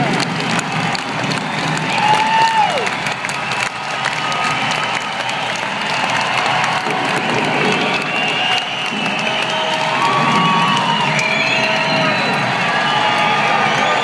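Large arena crowd cheering and applauding, with individual shouts and whoops rising above the steady noise.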